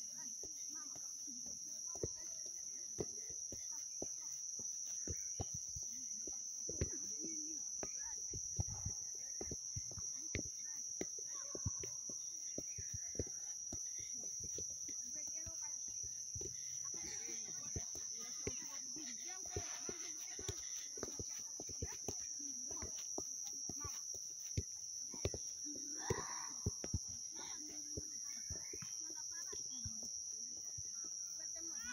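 Outdoor ambience on an open grass field: a steady high-pitched hum throughout, with scattered soft taps and knocks and faint distant voices in the middle and near the end.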